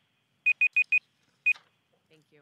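Electronic timer beeping: a quick run of four short, high beeps, then a single one about a second later. It signals that a speaker's three-minute time limit has run out.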